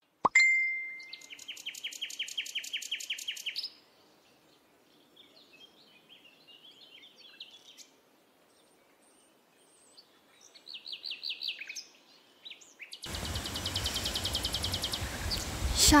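A bird trilling outdoors: a rapid run of short high notes, about eight a second, for a couple of seconds near the start and again briefly around eleven seconds in, with faint chirps between. From about thirteen seconds a steady outdoor background noise rises under another trill.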